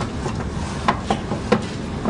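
A few sharp wooden clicks and knocks as wooden geometric insets are handled in a drawer of a Montessori geometric cabinet, the loudest about one and a half seconds in, over a steady low background hum.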